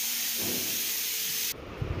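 A steady hiss that cuts off abruptly about one and a half seconds in.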